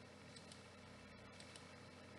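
Near silence: faint room tone with a few faint computer mouse clicks.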